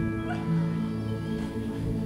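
Background music from a keyboard, playing sustained held chords.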